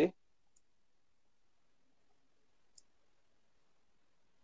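A man's voice trailing off on a hesitant 'uh', then near silence with two faint short clicks, one about half a second in and a slightly louder one near three seconds.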